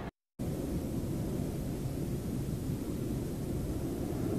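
Steady low background rumble of outdoor noise on an open live microphone, after a brief cut to silence right at the start.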